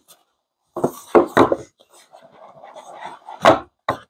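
A cardboard product box handled on a wooden table: a few knocks, then its lid sliding off with a drawn-out rubbing sound, ending in a louder knock.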